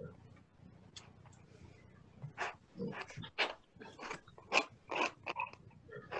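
A piece of plastic credit card scraped across damp watercolour paper, lifting paint out of the wash to shape stones: a run of short, quick scraping strokes starting about two seconds in, over a faint low hum.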